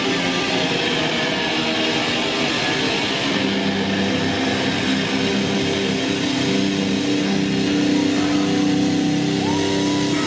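Metal band playing live: loud distorted electric guitars holding steady sustained chords.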